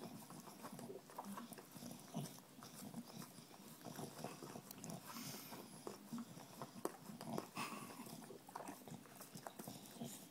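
English bulldog licking a plastic bottle: faint, irregular wet licks and tongue smacks.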